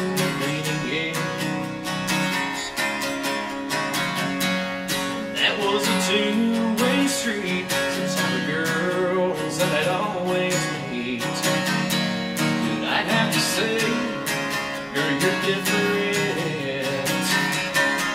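Acoustic guitar strummed in a steady country rhythm, with a man singing a country song over it at times.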